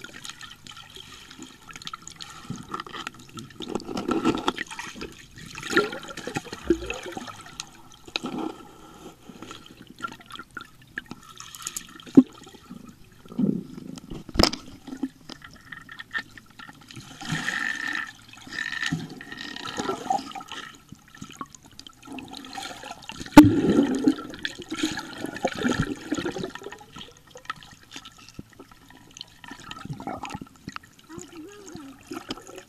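Water heard through an underwater camera in a pool: irregular muffled sloshing and bubbling that swells every second or two, with a few sharp clicks and a faint steady tone underneath.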